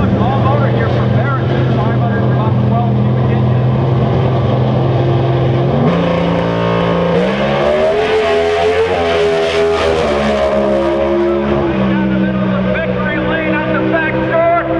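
Supercharged drag car's engine at full throttle down the strip. Its note holds steady for about six seconds, then climbs and swells as the car passes close, bending in pitch, and settles again as it pulls away.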